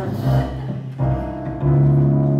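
Live jazz band playing a quiet backing passage: upright double bass notes moving under sustained chords.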